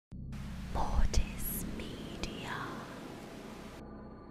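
Intro logo sound effect: a whispered voice over hissing, static-like noise and a low rumble, with sharp glitchy hits about one and two seconds in; the noise cuts off suddenly near the end.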